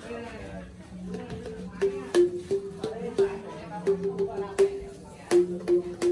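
A bamboo xylophone (t'rưng) struck with a mallet by a child: about ten hollow wooden notes from about two seconds in, unevenly spaced, mostly moving between two neighbouring notes.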